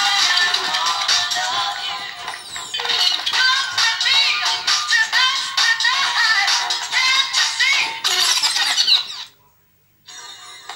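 A song with a singing voice and a steady beat, thin with almost no bass, which cuts off abruptly about nine seconds in.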